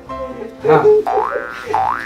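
Playful plucked-string background music with a repeating bass line. Over it come two loud rising whistle-like glides, typical of a comic 'boing' sound effect: one about a second in, the other near the end.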